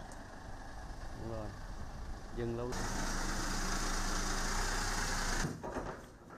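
A vehicle engine idling, a steady noise with a low hum that starts abruptly partway through and cuts off just before the end, with brief faint voices before it.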